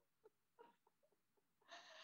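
Near silence, with a few faint breaths as laughter trails off and a soft breath near the end.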